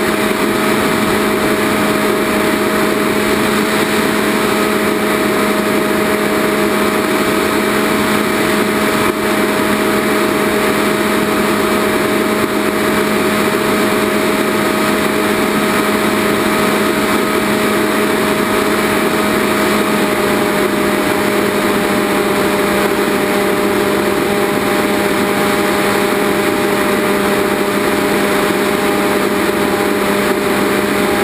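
Model airplane's motor and propeller running steadily in flight, with rushing air, heard from a camera on board. The pitch shifts slightly about twenty seconds in.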